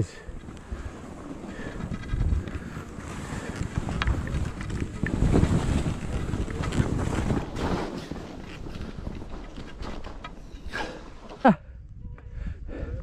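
Skis sliding and scraping over snow during a downhill run, with wind buffeting the microphone in gusts. Near the end a short, loud sound glides steeply down in pitch.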